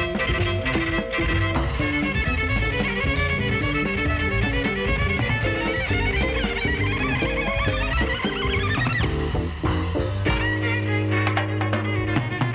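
Small jazz group playing, a bowed violin over upright bass and drum kit. From about the middle a long climbing run of notes rises to a peak near nine seconds, then gives way to held notes over a sustained bass line near the end.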